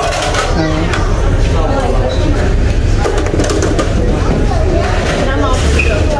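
Several people talking over a steady low rumble.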